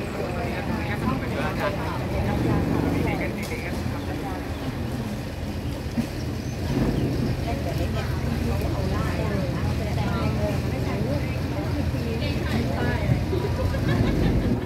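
Canal tour boat's engine running steadily, with indistinct voices of people aboard over it.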